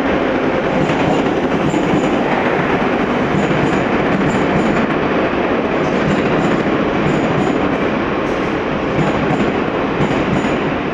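Metro train cars passing close along a station platform: a steady rolling rumble of wheels on rail, with pairs of clicks repeating about once a second as the wheels cross rail joints.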